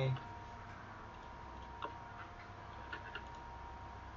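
A few faint, sharp computer mouse clicks, spaced irregularly, over a faint steady high-pitched electrical tone.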